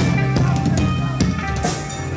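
Live band playing loud through a club PA: hard drum-kit hits with the cymbals about every half second over sustained guitar chords. It eases off a little near the end.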